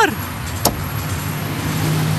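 A single sharp click about two-thirds of a second in as the pedestrian-crossing push button is pressed, over steady traffic noise from passing cars.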